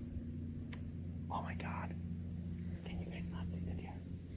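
Hushed human whispering over a steady low hum of several even tones that starts just before and stops shortly after.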